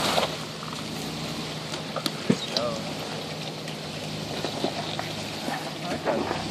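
Jeep Wrangler engine running at low revs as the Jeep crawls slowly over logs, with a couple of sharp knocks a little after two seconds in.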